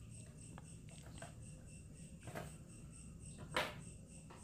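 Faint rustling and small clicks of hands handling a wire at a contactor terminal, the loudest click near the end. A faint high tone pulses about four times a second underneath.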